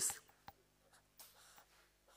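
Faint scratching of hand-drawing strokes on a writing surface as a diagram is sketched, with a single sharp click about half a second in.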